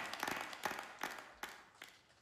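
A few scattered hand claps, irregular and thinning out, while the last of the music dies away.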